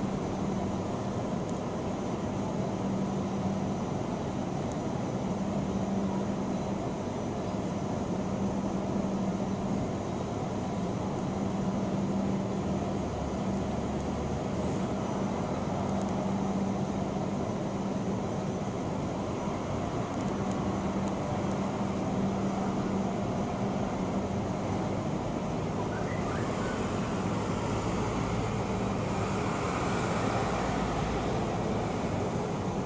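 Steady low mechanical rumble, with a low hum that fades in and out every couple of seconds.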